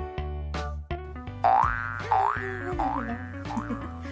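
Background music with a cartoon 'boing' sound effect: four quick rising glides about half a second apart, starting about a second and a half in.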